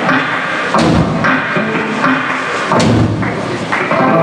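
Surf-rock band playing live and loud: heavy accented drum-kit hits, about seven in four seconds, over electric guitar.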